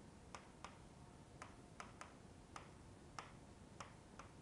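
Faint, irregular clicks of a stylus pen tapping on an interactive whiteboard as corner letters are written, about nine clicks in four seconds over near-silent room tone.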